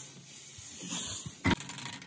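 Impact wrench driving a hub puller's centre bolt to press a stuck drive axle out of the rear hub: a rising hiss, then a sharp burst about one and a half seconds in and a quick rattle of hammering near the end.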